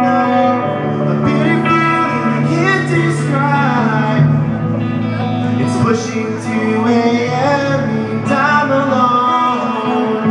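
Live rock band playing the opening of a song, with guitar to the fore, loud and steady throughout.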